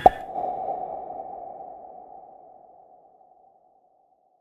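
A single sharp click at the close of a hip-hop mashup track, with a ringing, ping-like tail that fades away over about three and a half seconds.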